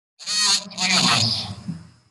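A person's voice coming over the video-call link, loud and in two stretches, with a thin high tone trailing off near the end.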